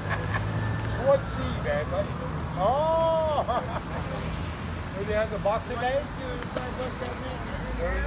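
City street traffic: passing cars give a steady low rumble, with scattered voices nearby. About three seconds in, a loud brief tone rises and falls, and a sharp click comes about a second in.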